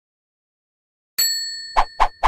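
Silence, then about a second in a single bright ding of a logo-intro sound effect rings out and fades, followed by a short swish near the end.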